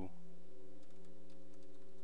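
Computer keyboard typing: faint, irregular key clicks over a steady low hum.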